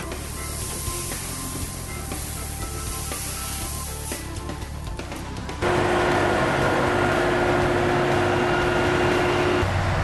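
Seed grain pouring from a sack into a seed drill's hopper, a soft steady rushing hiss. A little past halfway it gives way to a louder, steady tractor engine hum with a held whine, as a tractor pulls the seed drill.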